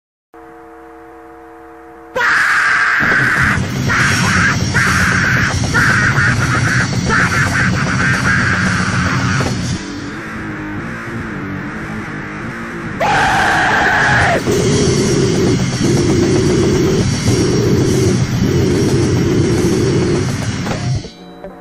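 Hardcore punk band recording: a short quiet held tone, then the full band with drums and distorted guitar kicks in about two seconds in. It drops to a quieter stretch around ten seconds in, comes back in full about three seconds later, and stops just after the end.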